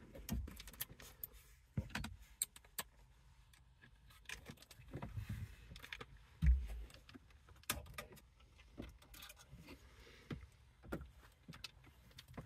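Faint, scattered clicks and small metallic knocks of hand tools and screws as the 7 mm screws holding the radio unit are taken out, with one louder low thump about halfway through.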